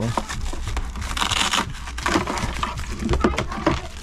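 Plastic packaging crinkling and rustling as a headset microphone and its cable are pulled out of a hard carrying case, with a denser burst of crinkling about a second in.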